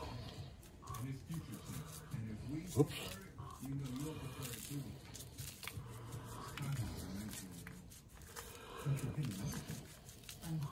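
Dry barbecue rub shaken from a shaker bottle over raw chicken skin: light rattling and patter of granules, with a sharp tap about three seconds in. Faint voices murmur underneath.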